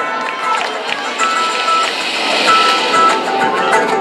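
Live electric guitar starting a song with a quick riff: a short high note picked over and over against lower notes, with the band joining in.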